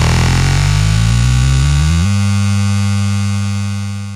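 Techno music at the close of a live DJ mix: the beat drops out, low notes step downward in pitch, then a single low note holds from about halfway and fades out near the end.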